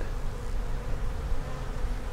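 Honeybees buzzing steadily around an opened hive, a colony crowding the frames as they are lifted out.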